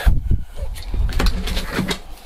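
Low rumbling handling noise with a few knocks, as a second garden hose is brought over to the tap's two-way hose connector.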